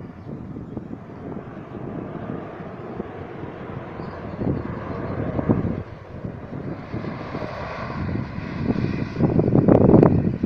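Wind buffeting the microphone in gusts. Over the last few seconds an engine draws nearer, its hum growing louder toward the end.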